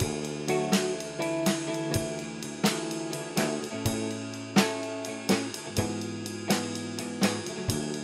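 Live band playing an instrumental passage: electric guitar chords ringing over a drum kit keeping a steady beat of drum and cymbal hits, with no singing.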